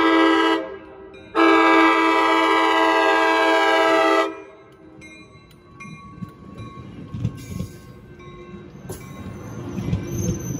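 A commuter train's multi-note air horn sounds from the leading cab car: one blast ends about half a second in, and a second steady blast follows about a second later and lasts about three seconds. After it stops, the cab car and bilevel coaches roll slowly past at a much lower level, with rumbling and scattered wheel clicks.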